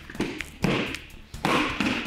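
A person thrown by a finger and wrist lock lands on tatami mats in a breakfall: two heavy thuds about a second apart.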